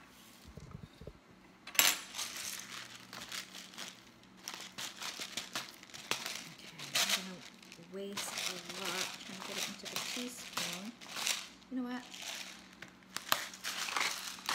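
Black peppercorns being ground in a twist-top pepper-grinder bottle: a rapid, dry crackling of the turning grinder head that comes in runs, beginning with a sharp click about two seconds in.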